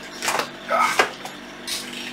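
Two light clicks or knocks, about three-quarters of a second apart, with a short breath near the end.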